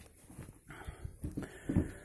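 A hand stroking and patting a giant-breed rabbit's fur, with rubbing and soft, irregular thumps as the rabbit is handled on a carpeted mat.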